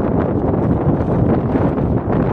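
Wind buffeting the microphone, a loud, steady rumble.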